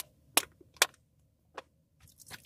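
Three sharp clicks close to the microphone: two loud ones about half a second apart near the start and a fainter one later, over a faint low steady rumble.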